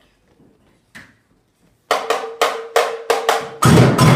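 Samba percussion starting up: after a quiet opening with one light tap about a second in, a small hand-held drum plays a quick call of sharp, ringing strikes from about two seconds in, and the large surdo bass drums come in with a loud deep boom near the end.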